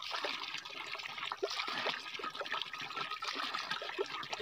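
Water running from an outdoor tap, trickling and splashing through cupped hands, with a steady patter of small drips and splashes.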